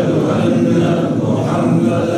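A man chanting a melodic religious recitation in one voice, holding long, steady notes.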